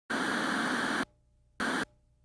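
Two bursts of television static hiss: one about a second long, then a short blip after a brief gap, each starting and stopping abruptly.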